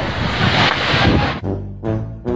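Sea waves crashing over a seawall, a loud rushing wash of spray that cuts off suddenly about a second and a half in. Music plays under it and carries on alone after.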